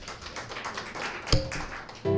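Light taps and clatter of things being handled on a wooden lectern, with one louder sharp knock in the second half.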